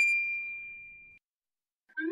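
A bright, bell-like "ding" sound effect: one sharp strike that rings on a single high tone, fading for about a second before cutting off abruptly. Right at the end a short rising slide begins.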